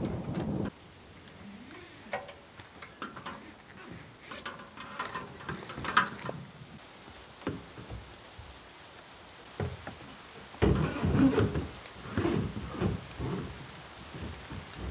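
Handling noises of a flexible sump pump hose and a plastic water tote: scattered knocks, rubs and clicks, busiest and loudest from about ten seconds in, over the faint patter of light rain.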